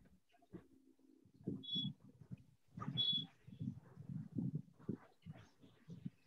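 Faint animal sounds in the background, irregular and low-pitched, with two short high chirps about one and a half and three seconds in.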